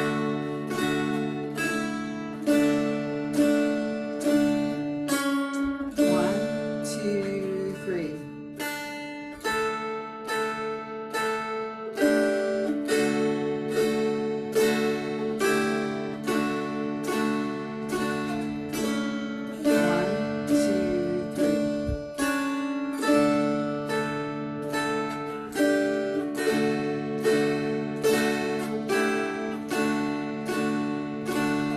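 Two mountain dulcimers played together, plucking a slow, even melody at about two notes a second over a sustained drone.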